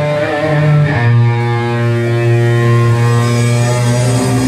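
Live metal band playing slow, held guitar chords, changing to a new sustained chord about a second in.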